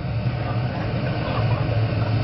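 Electric bass guitar holding a steady low drone through the stage PA, with an even wash of noise above it.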